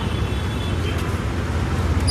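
Steady street traffic noise: a low, even rumble of passing vehicles with a hiss above it.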